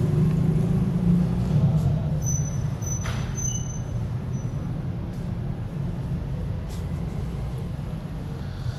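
Steady low background rumble, easing slightly after about two seconds, with no speech.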